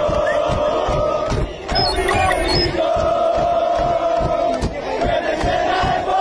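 Large crowd chanting together in long drawn-out calls, with a brief break about a second and a half in, over a run of low thumps.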